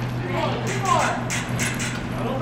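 Indistinct voices with a short falling call about a second in, over a steady low hum, then a quick run of sharp clicks near the end.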